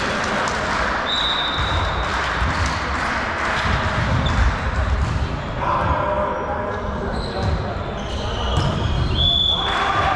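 Indoor volleyball play in an echoing sports hall: the ball being struck and bouncing, short high sneaker squeaks on the court floor, and players' voices calling out around the middle.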